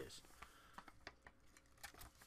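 Near silence with a few faint, light clicks spread through it, from paper being handled.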